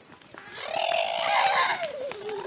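A child's long, loud shout, starting about half a second in and tailing off slightly near the end.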